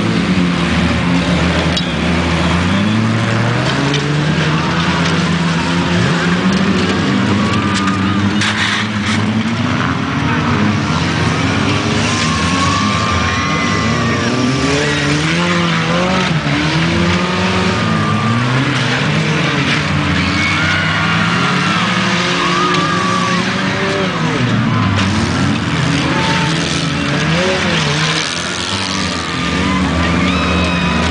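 Several compact car engines running hard in a dirt-track race, their pitch rising and falling over and over as the cars accelerate and slow through the turns. A couple of sharp knocks come about nine seconds in.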